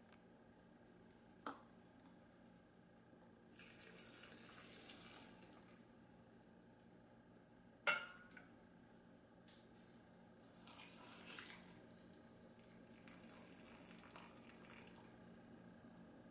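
Faint pouring of hot pickling brine from a glass measuring cup through a plastic canning funnel into glass jars, in several short pours. A sharp clink of the cup against the saucepan comes about eight seconds in, with a smaller tap earlier.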